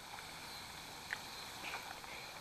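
Faint, steady outdoor background hiss with a single small click about a second in.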